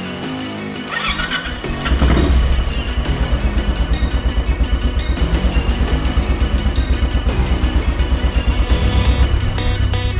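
A Royal Enfield single-cylinder motorcycle engine is started on the electric starter: a brief crank about a second in, then it catches and settles into an even, pulsing idle, with background music over it.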